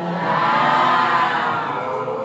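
A group of people calling out together in unison, one long shared call that swells and then fades: the assembled guests' collective response during a Lao baci blessing ceremony.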